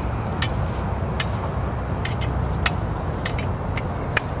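Smallsword blades clinking together in short, sharp metallic touches, about eight in four seconds at irregular spacing, some in quick pairs, over a steady low rumble.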